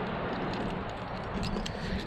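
Steady rushing outdoor noise, with a few faint clicks in it.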